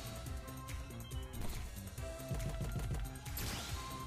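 Online slot game's background music with its sound effects: a few short knocks in the middle as the reels spin and land on a new result.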